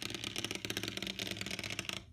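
A jitterbot's small DC motor spins an off-centre pink eraser, and the unbalanced weight shakes the bot. It makes a fast, steady buzzing rattle as its pushpin legs chatter on a wooden tabletop. The rattle cuts off right at the end.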